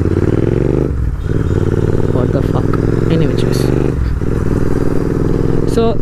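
Royal Enfield 650 parallel-twin motorcycle engine running under way, its note dipping briefly about one second in and again about four seconds in.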